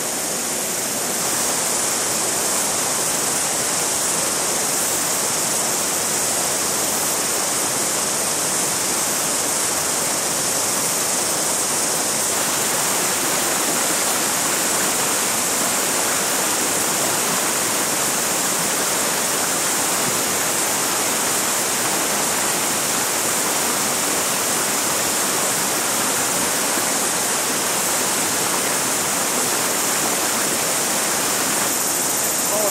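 Steady rush of river water running over a shallow, rocky riffle, heard close by.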